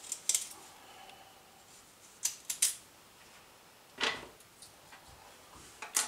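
Small kitchen knife scraping along a raw carrot in a few short, sharp strokes as it is peeled, with a duller knock about four seconds in.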